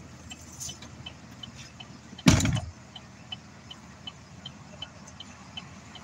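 Inside a car's cabin: a steady low engine hum with light, evenly spaced ticking about two or three times a second, and one loud short thump a little over two seconds in.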